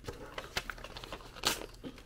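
Paper crinkling and rustling in a series of short crackles, the loudest about one and a half seconds in.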